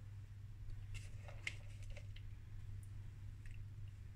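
Faint rustling and light ticks of grated cheese being scattered by hand over pasta in a baking tray, most of them clustered between about one and two seconds in, over a steady low hum.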